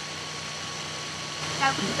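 Steady background hiss with a faint hum from a video-call recording; a woman's voice starts near the end.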